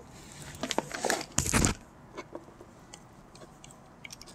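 Handling noise from a drilled PVC pipe being picked up over paper: light clicks and rustles, then a short, louder knock and scrape about a second and a half in.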